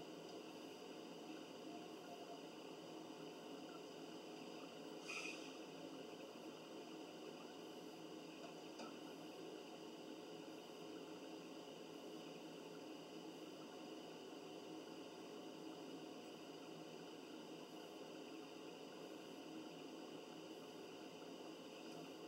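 Near silence: faint room tone with a steady hiss, and one brief faint sound about five seconds in.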